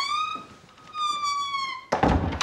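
Wooden door's hinges creaking in two long high squeals as it is pushed shut, ending in a thump as the door closes.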